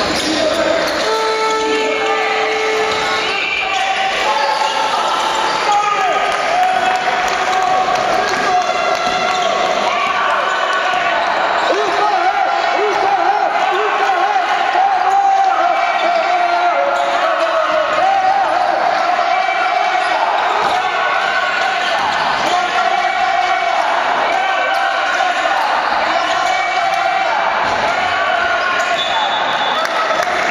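Basketball game on a hardwood court: the ball bouncing on the floor, with many short squeaks scattered throughout, the kind rubber-soled basketball shoes make on hardwood, and voices calling on the court.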